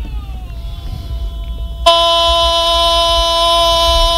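A horn sound effect: a tone gliding downward, then, about two seconds in, a sudden loud steady horn blast held without a break.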